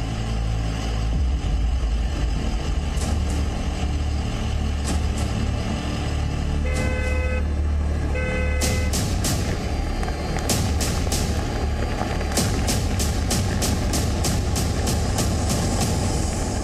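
Two short car-horn toots, one about seven seconds in and another a second and a half later, over a steady low rumble and background music whose sharp ticking beat fills the second half.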